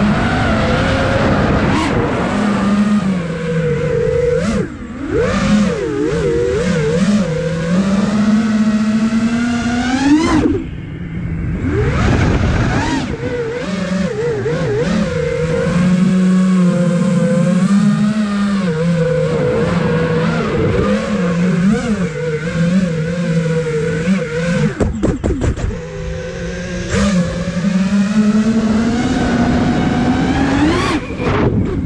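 The brushless motors and propellers of a 5-inch FPV quadcopter (iFlight Nazgul Evoque F5) buzzing, the pitch rising and falling constantly with the throttle. About ten seconds in the whine climbs high, then cuts off sharply as the throttle is chopped. About 25 seconds in there is a short burst of rapid crackles.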